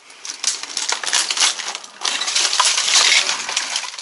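Loose rubble and rubbish crunching and clinking as someone moves over a debris-strewn tunnel floor: a rapid run of small sharp crackles that grows louder about two seconds in.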